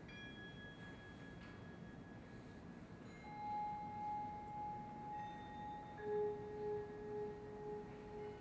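Sparse, quiet mallet-percussion notes left to ring: a few faint high bell-like tones, then a long sustained note entering about three seconds in, and a lower note about six seconds in whose loudness pulses slowly and evenly, like a vibraphone with its motor tremolo on.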